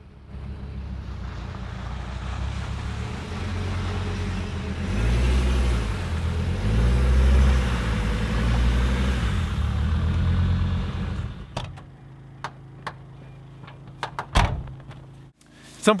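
A motor vehicle's engine running, its pitch rising and falling between about five and ten seconds in, then cut off sharply a little after eleven seconds. After it come a few light clicks and a thump.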